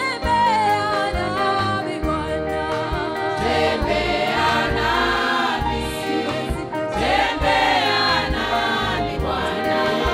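Live gospel worship music: a woman's lead vocal sung into a microphone over a choir, with electric bass and band accompaniment.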